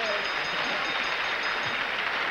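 Studio audience applauding, a steady wash of clapping for a correct answer.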